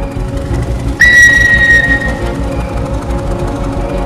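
Background music with a steady beat. About a second in, a loud, high whistle note sounds over it for about a second, with a short upward slide at its start.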